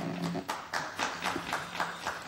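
A series of irregular knocks and clicks, about four a second, over a faint low steady hum.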